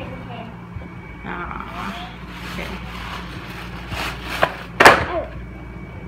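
Rustling and handling as a gift is unwrapped and its contents taken out, with two sharp clacks about four and a half seconds in, the loudest sounds, as things hit the wooden floor. Faint voices murmur underneath.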